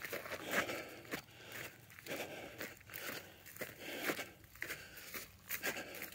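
Footsteps crunching through dry grass stubble at a walking pace, a string of short crunches.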